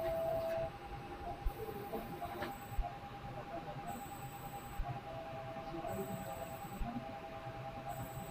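Faint electronic tones from operating-theatre equipment: one steady tone, and others that switch on and off for a second or so at a time, with faint soft thuds every second or two.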